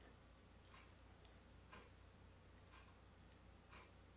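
Near silence: faint, even ticks about once a second over a low room hum.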